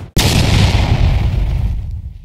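A loud cinematic boom hits suddenly just after a brief silence, then rumbles and fades away over about two seconds.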